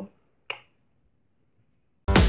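A single short lip smack of a blown kiss, about half a second in.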